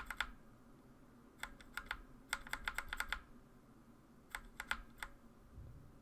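Typing on a computer keyboard in four short bursts of quick keystrokes, with pauses between them.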